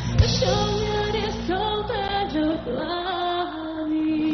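A woman singing a Burmese pop song live into a microphone over full band accompaniment, ending on a long held note near the end.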